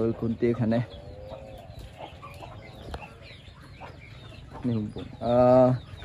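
Chickens clucking softly, with short faint calls in a quiet stretch between bursts of talking.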